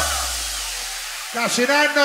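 Club dance music cuts off, leaving a deep bass note and a hiss that fade away over about a second. About 1.4 s in, a man's raised voice starts on a handheld microphone through the club's sound system.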